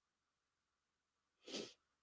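A person's single short sneeze about a second and a half in, amid near silence.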